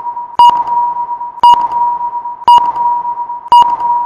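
Countdown intro sound effect: a steady high electronic tone with a sharp beep-tick once a second as the count runs down, four ticks in all.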